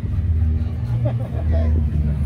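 A low steady rumble under faint, indistinct voices.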